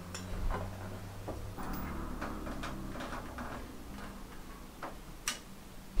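Scattered light clicks and rustling from a lifting strap and a metal hook and carabiner being handled as a car seat is rigged to a hanging dial scale, over a faint steady hum.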